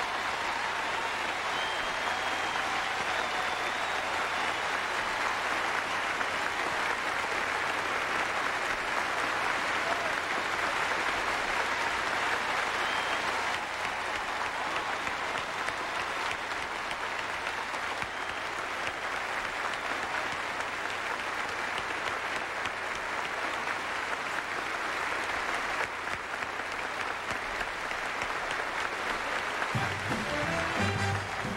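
A large theatre audience applauding: dense, sustained clapping from a full house that holds at an even level throughout.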